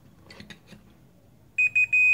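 Fluke digital multimeter's continuity buzzer beeping as its probes touch a wire connection: a few short stuttering beeps about one and a half seconds in, then a steady high beep, the sign that the connection is continuous.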